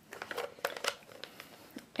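Faint, irregular ticks and rustles of cardstock and craft supplies being handled on a work surface.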